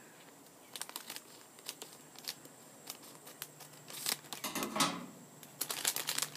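A plastic blind-bag packet crinkling and tearing as it is cut open with scissors and handled, in scattered short crackles that grow busier near the end.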